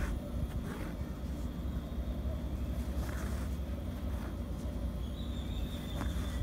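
Steady low background rumble, with a few faint, brief rasps of embroidery thread being drawn through the stitched fabric in a hoop.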